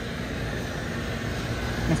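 Rooftop package air-conditioning unit running, a steady hum with an even whoosh from its condenser fan and compressor. It is running on a jumper with its tripped low-pressure switch taken out of the safety circuit.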